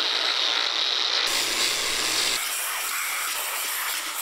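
Angle grinder with a surface-cleaning disc running against the aluminium cylinder head's gasket face, scrubbing the deck clean. The steady grinding changes character abruptly twice.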